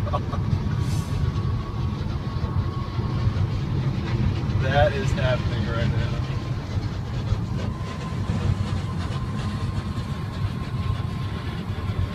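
Steady road and engine rumble of a car driving at highway speed, heard from inside its cabin, with a thin steady whine running over it.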